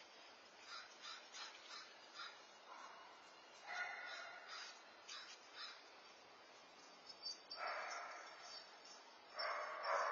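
Harsh animal calls: three of them, each about a second long, about four seconds in, near eight seconds and near the end, the last the loudest, with small chirps before them.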